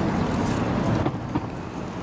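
Wind blowing on the microphone outdoors, a steady low noise that drops in level about a second in.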